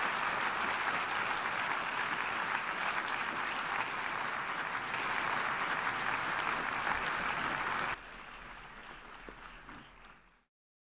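Large audience applauding, a dense steady clapping that drops suddenly to a softer level about eight seconds in and dies away near the end.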